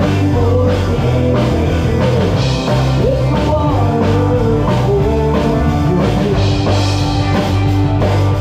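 Live band playing loudly on an amplified stage: drum kit, bass and electric guitars, with a fiddle carrying a wavering, sliding lead line over them.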